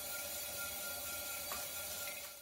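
Electric potter's wheel running while a metal loop tool scrapes a leather-hard clay pot, a steady soft rasp with a faint motor whine, and a small tick about one and a half seconds in.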